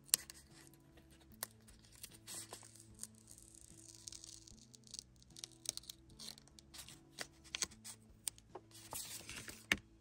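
Soft background music, with small clicks, taps and short papery rustles of stickers being peeled off their backing sheet and handled with tweezers.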